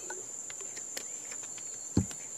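Crickets trilling steadily in a high, even tone, with a few faint clicks and a single dull thump at the very end.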